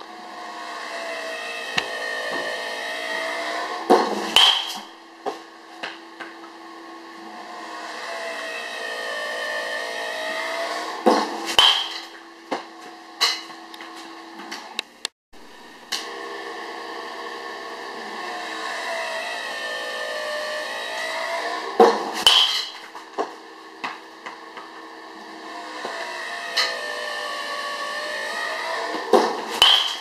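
Easton XL1 BBCOR baseball bat hitting baseballs: four sharp cracks several seconds apart, each followed by a few lighter knocks. Before each hit a pitched mechanical whir swells and fades.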